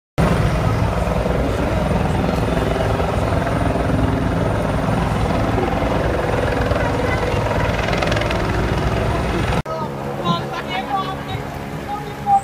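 Helicopter rotor and engine noise, loud and steady, with voices under it; it cuts off suddenly about nine and a half seconds in, leaving quieter voices.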